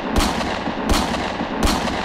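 Logo intro sound effect: three heavy hits about three-quarters of a second apart over a loud, dense noisy rush, like explosions or shots.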